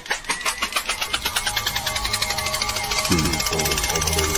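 Domestic tabby cat purring very loudly, a fast, even pulsing purr that sounds like a tractor engine.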